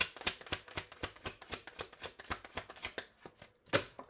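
A tarot deck shuffled by hand: a quick, dense run of soft card flicks and slaps for about three seconds. It stops briefly, then comes one sharper snap of cards near the end.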